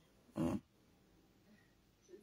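A single short puff of breath through the nose, about half a second in; otherwise near silence.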